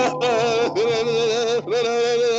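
A man's drawn-out, high-pitched laugh held on one wavering note, so that it sounds like humming or singing. It comes in long stretches broken by two short catches of breath, and is heard through a voice call.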